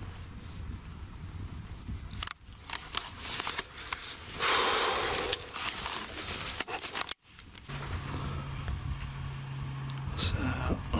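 Handling noise from a handheld camera being moved: scattered clicks and scrapes, with a short burst of hiss about halfway through. A low steady hum starts near the end.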